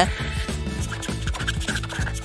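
Black felt-tip marker scratching across paper in short strokes as lines are drawn, over background music.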